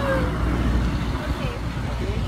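Steady low background rumble, with a few faint, brief voices.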